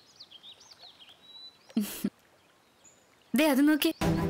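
Faint birds chirping over quiet outdoor ambience: a quick run of short rising-and-falling chirps in the first second and a half. A brief loud burst comes about two seconds in, and a voice speaks near the end.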